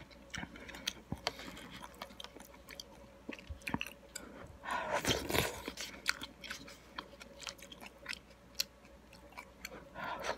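Close-miked chewing of instant miso ramen noodles: wet mouth sounds and small irregular clicks, with a louder stretch about five seconds in.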